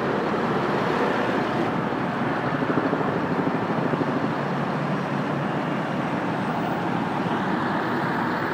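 Steady city street traffic noise, a constant wash of engines and passing vehicles.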